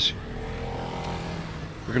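A road vehicle's engine running steadily: an even hum with a few faint steady tones over outdoor street noise.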